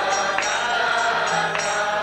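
A kirtan: a group singing a devotional chant together, with a mridanga drum, metallic cymbal strikes about twice a second, and hand clapping.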